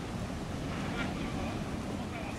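Beach ambience: wind rumbling on the microphone and small waves washing on the shore, with faint voices of people on the beach.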